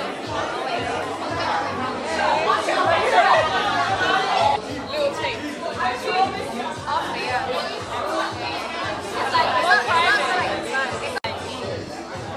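Several people talking over one another, with music playing in the background. The sound cuts out for an instant near the end.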